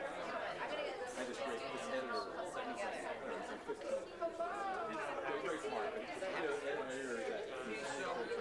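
Audience chatter: many people talking at once in overlapping conversations, none standing out.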